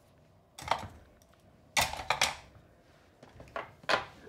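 Scissors and other craft tools being picked up and set down on a desk: three short bursts of clattering knocks, spread about a second apart.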